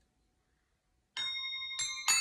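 Crotales struck one at a time, beginning a C major scale from the low C: the first bright, ringing note comes about a second in and a second note a step higher follows, both left to ring.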